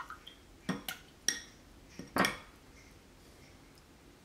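Light clinks and knocks of small hard objects being handled, about five short hits in the first two and a half seconds.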